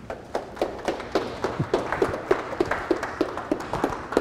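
Audience applauding: many overlapping claps, fullest about two seconds in and thinning toward the end.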